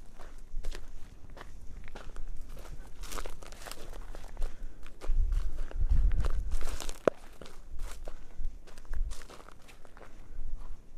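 Footsteps on dry grass stubble and loose stony glacial till, irregular steps with small clicks, and a low rumble for a couple of seconds around the middle.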